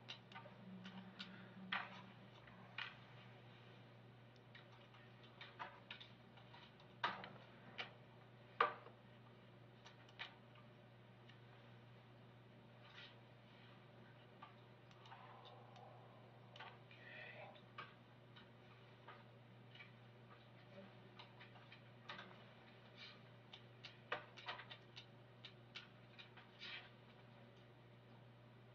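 Near silence on a courtroom audio feed: a steady low electrical hum with scattered, irregular faint clicks and taps.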